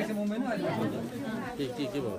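Speech only: people talking, with several voices chattering over each other.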